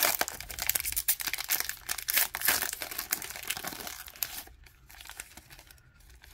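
Foil trading-card pack wrapper torn open and crinkled by hand: dense, irregular crackling that thins out about four seconds in.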